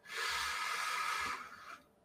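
A man's long breath out close to the microphone, a sigh that lasts about a second and a half and then trails off.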